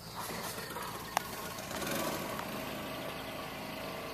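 A motor engine running steadily, with a single sharp click about a second in.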